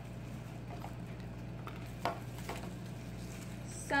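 Small plastic packets being handled and opened: faint crinkles and a few light taps, two of them close together about two seconds in, over a steady low hum.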